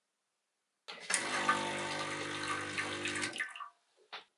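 Lelit Mara X espresso machine's vibration pump running with water rushing out of the group head, a group-head flush. It is a steady hum under the rush of water, lasting about two and a half seconds before it cuts off.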